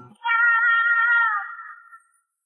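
A single drawn-out, high, meow-like vocal note that slides down at its end.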